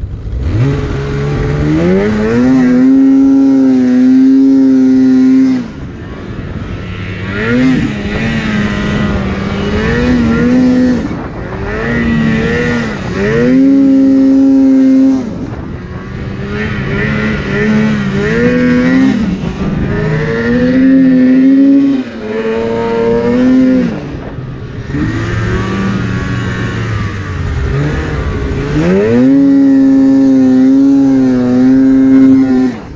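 2016 Polaris RMK Axys 800 snowmobile's two-stroke twin under throttle in deep powder, revving up to a held high pitch for a few seconds, then dropping back, over and over as the rider works the throttle.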